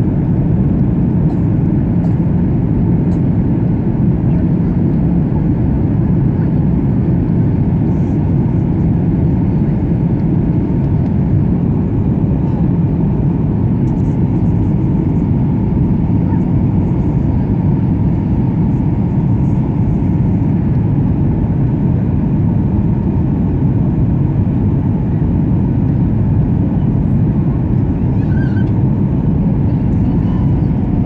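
Steady cabin noise inside a Boeing 737-900ER in flight: an even, loud rush of airflow and drone from its CFM56-7B turbofans, heaviest in the low end, unchanging throughout.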